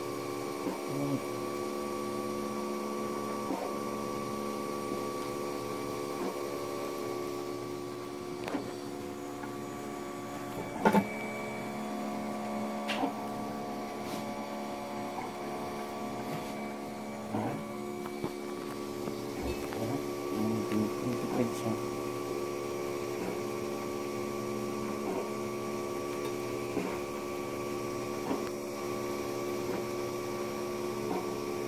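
Monoprice Select Plus 3D printer running a print: its stepper motors whine in steady tones that shift pitch briefly every second or two as the print head changes direction, over the hum of its cooling fans. A sharp click comes about eleven seconds in.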